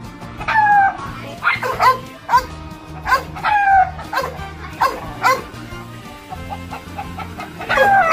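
A dog and a rooster fighting: a series of short animal cries and yelps, some dropping in pitch, repeated every half second or so, over background music with a steady bass line.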